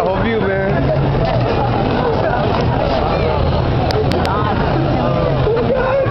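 Many people talking at once, with a steady low hum underneath that fades out about two-thirds of the way through.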